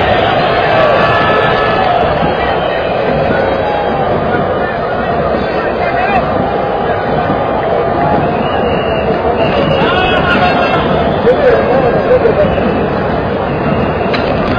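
Football stadium crowd: a loud, steady din of many voices, with single voices standing out now and then.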